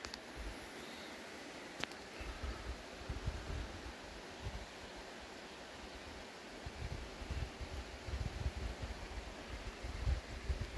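Outdoor ambience: wind buffeting the microphone in irregular low gusts, stronger in the second half, over a faint steady hiss. One sharp click a little under two seconds in.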